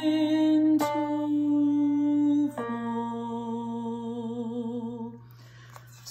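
A woman singing long held notes with vibrato along with a MIDI piano, with new notes struck about a second in and again near three seconds. The music fades out a little before the end.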